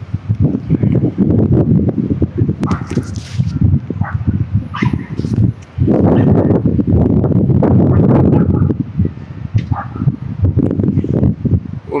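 Wind buffeting a phone's microphone: an irregular low rumbling rush that comes in gusts, strongest from about six to nine seconds in.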